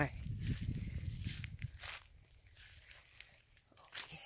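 Footsteps on dry desert ground, with a low rumble on the phone's microphone for the first half that then drops away, leaving a few faint steps.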